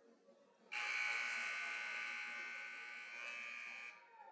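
Gymnasium scoreboard horn sounding once, a steady buzzing blare of about three seconds that starts abruptly about a second in and cuts off just before the end. It marks the pregame clock running out before tip-off.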